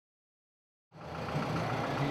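Silence, then about a second in a bus engine idling fades in: a steady low hum.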